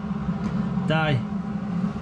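A man's voice: one short utterance about a second in, over a steady low hum.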